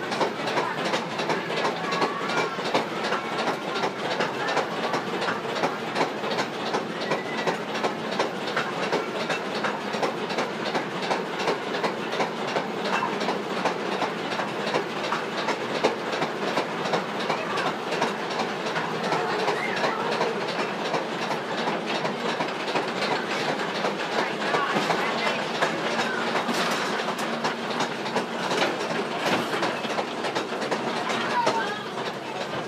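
Ride train running on its track, its wheels clattering steadily over the rails.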